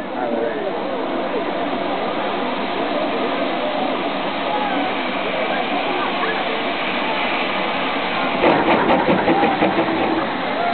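Steam locomotive 35028 Clan Line, a rebuilt Merchant Navy class Pacific, hissing steam from around its cylinders with the drain cocks open as it gets ready to pull away. Near the end comes a quick run of sharp exhaust beats as it starts to move.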